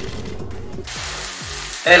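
Boiling pasta water pouring from a pot into a plastic colander, then, after a cut, a steady sizzle of diced eggplant frying in oil in a pan.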